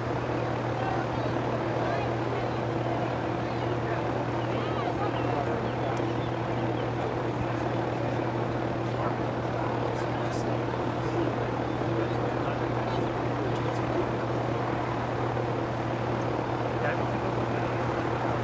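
A steady low mechanical drone like a running engine, unchanging in level, with faint distant voices and shouts over it.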